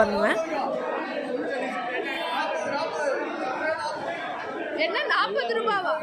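Overlapping voices of many people talking at once in an indoor market hall, with one voice standing out clearly about five seconds in.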